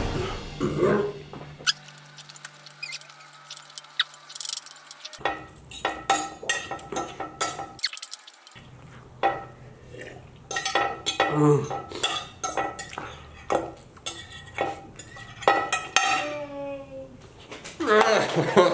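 Metal fork clinking and scraping against a large plate, in many quick irregular strokes, as the last noodles are gathered up. Short vocal sounds break in now and then.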